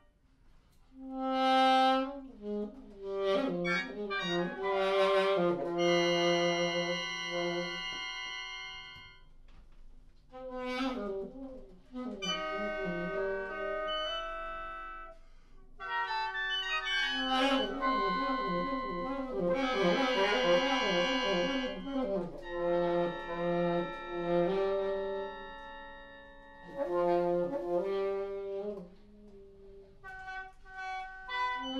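Free-improvised reed music: an alto saxophone and other woodwinds play overlapping held notes and quick runs in several phrases, broken by short pauses.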